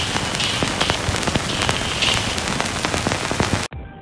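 Loud hiss full of scattered crackles and pops, an old-film crackle sound effect, which cuts off suddenly near the end. Quieter music follows.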